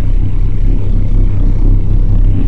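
A loud, steady deep hum with a faint hiss over it, unbroken.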